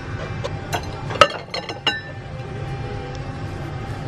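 A few light clinks of hard objects being handled, with short ringing tones, the loudest about a second in and a quick cluster shortly after.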